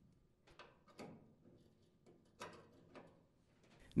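Faint, brief scrapes and clicks of metal parts being handled, four soft sounds in all, as a dryer's new idler pulley bracket is slid onto the motor carriage pivot.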